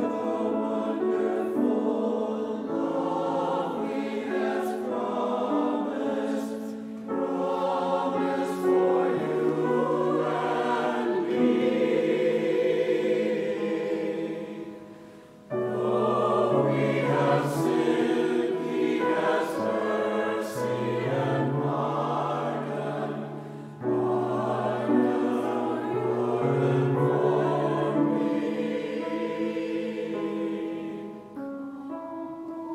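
Mixed church choir of men's and women's voices singing with grand piano accompaniment. The music goes in phrases, with a brief drop about halfway through before the next phrase begins.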